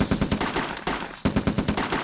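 Rapid automatic gunfire set into the song as a sound effect, two quick bursts of shots with a short break a little after a second in.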